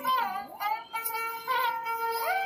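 Background music: a high voice singing a melody with long held notes that slide from one pitch to the next.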